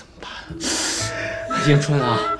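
A woman crying, with a sharp gasping sob about half a second in, over soft background music with held tones. A man's voice starts near the end.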